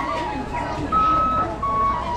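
Toy flute played in a few long held notes that step between pitches, the highest and loudest about a second in, over crowd chatter.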